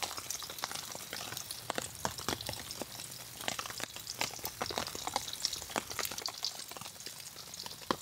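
Burger patty sizzling in hot fat in a cast iron skillet, a steady hiss broken by many small irregular pops and crackles.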